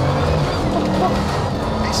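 Bugatti Veyron 16.4 Grand Sport Vitesse's quad-turbo W16 engine running under way at fairly even revs, with road noise.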